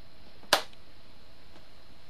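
A single sharp hand click about half a second in, made during a mimed handshake routine, over faint steady room hiss.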